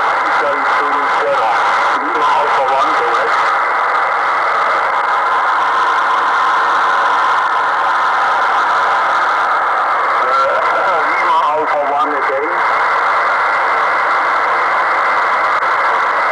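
Shortwave receiver on the 20-meter amateur band: a steady hiss of band noise with a weak single-sideband voice coming through it, clearest near the start and again about eleven seconds in.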